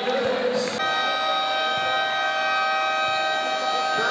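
Basketball gym buzzer sounding one long steady tone. It starts abruptly about a second in and holds without change.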